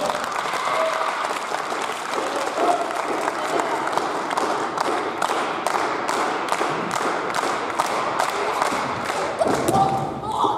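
Wrestling audience applauding, settling about halfway through into steady clapping in unison, about three claps a second, with a few short shouts early on.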